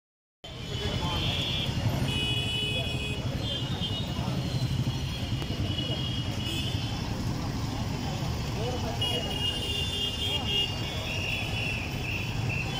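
Busy city street traffic: cars and motorcycles running and passing in a steady rumble, with several short, high-pitched horn beeps scattered throughout.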